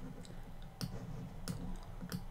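A few sharp clicks from computer input while code in the editor is being selected for copying, the two clearest just under a second in and about a second and a half in.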